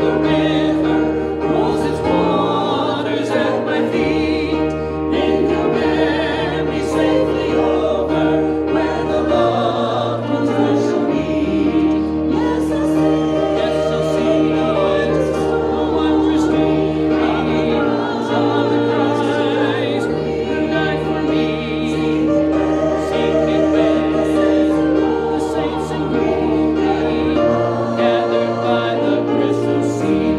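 A church congregation singing a hymn together over instrumental accompaniment. Held chords, with the bass note changing every two to three seconds.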